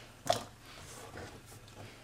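Chopped carrot pieces dropped by hand into a small stainless steel pot of potato chunks: one short soft knock about a third of a second in, then faint rustling of the vegetables.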